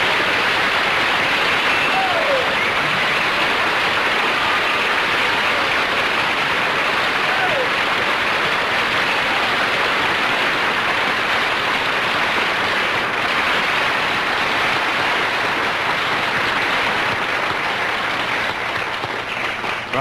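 Theatre audience applauding steadily and at length, easing off slightly in the last couple of seconds.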